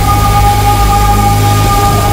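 Electronic score: a held high synth tone, two pitches sustained steadily over a loud, deep bass drone.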